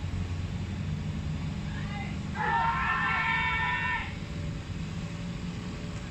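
A cricket fielder's shout, loud and high-pitched, lasting about a second and a half from about two seconds in, over a steady low rumble.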